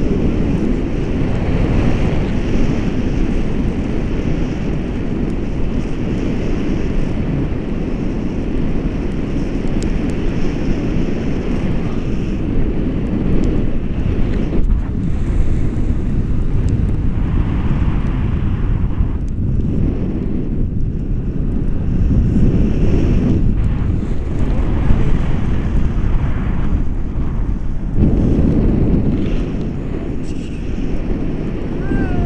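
Airflow of a tandem paraglider in flight buffeting the camera microphone: a loud, steady wind rumble that rises and falls.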